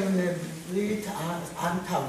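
Speech only: one person talking in continuous, unbroken speech.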